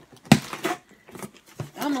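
A box being ripped open by hand: one sharp tear about a third of a second in, the loudest sound, then quieter tugging and rustling as the box resists.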